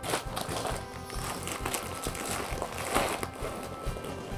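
Rustling and light clicks of school supplies being handled and pushed into a backpack's front pocket, in short irregular strokes, with faint music underneath.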